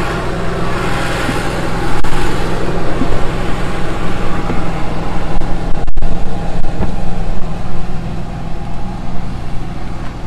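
Onan gas RV generator running steadily at an even speed, a constant engine hum, with a momentary break in the sound about six seconds in.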